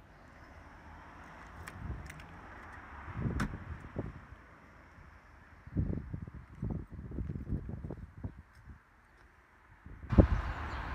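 Mazda MX-5 boot lid shut with a single sharp click about three and a half seconds in, then a few seconds of low, irregular buffeting on the microphone.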